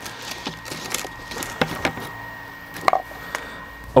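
A few soft, scattered knocks and clicks of handling, over a steady faint hum.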